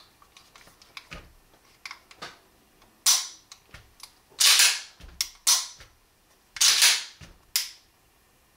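Steel 1911 pistols being handled: a run of metal clicks and clacks, light at first, then five louder, sharper clacks in the second half, some with a short sliding tail.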